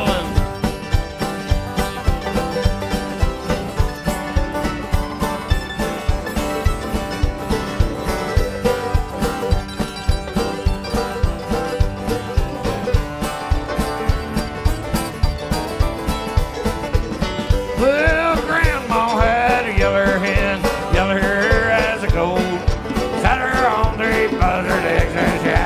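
Live bluegrass band playing an uptempo tune, with strummed acoustic guitars, banjo, upright bass and a drum kit keeping a steady beat. Near the end a lead line with bending notes rises above the band.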